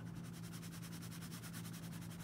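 Quiet room tone: a steady low hum with a faint, fast, even buzz over it, and no distinct pen strokes standing out.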